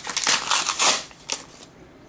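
Paper perfume sample cards rustling and crinkling as they are handled, a cluster of crisp rustles lasting about a second.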